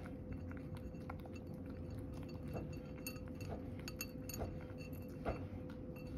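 A cat eating chopped carrot with bonito flakes from a ceramic bowl: soft chewing with light clinks against the bowl, about one a second in the second half.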